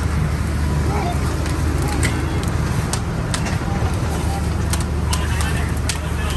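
Steady low rumble of a fire engine running at the fire scene, with scattered sharp pops and crackles from the burning building.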